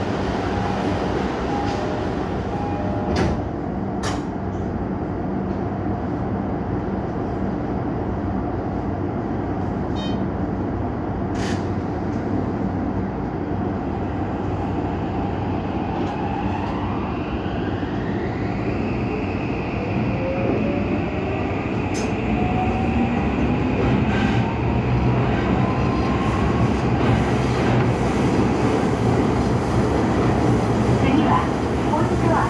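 Toei 5500-series subway train pulling away from a station. Its motor drive gives a whine that climbs in pitch as it accelerates, starting a little past halfway, then levels off while a second, lower tone keeps rising. Running noise grows louder toward the end, with a few short clicks earlier while it stands.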